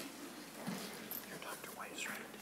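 Faint, off-microphone voices talking quietly in a committee hearing room.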